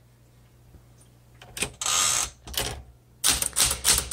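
1969 Smith Corona Classic 12 manual typewriter: after a quiet start, a click, then the carriage is returned with a rattling slide lasting about half a second, then another click. Near the end the typebars start striking the platen in quick succession.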